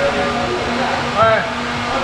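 Indistinct voices of people talking in a large hall over a steady rushing background noise, with one short, clearer voice a little past the middle.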